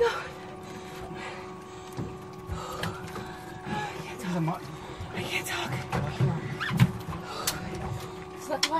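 Faint, indistinct voices over a steady low hum, with a few scattered clicks.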